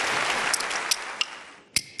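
Studio audience applauding, the clapping fading away over the second half. Near the end comes a single sharp wooden clack, the first strike of a set of bamboo clappers (kuaiban).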